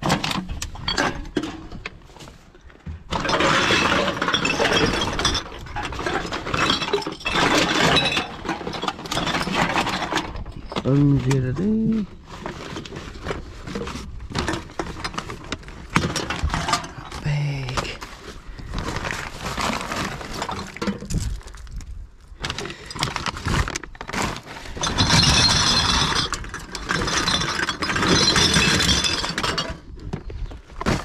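Empty aluminium drink cans and glass and plastic bottles clinking and rattling as gloved hands rummage through a full wheelie bin, with paper bags rustling. The loudest clatter comes in long stretches early on and again near the end.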